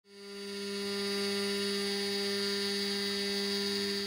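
Makera Carvera Air desktop CNC machine running with a steady, even whine that fades in over the first second.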